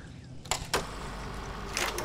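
A cast with a baitcasting rod and reel: two sharp clicks about half a second in, then a soft-plastic swimbait splashing into the water near the end.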